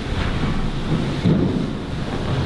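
A low rumbling, rustling noise with no speech, swelling a little about a second in.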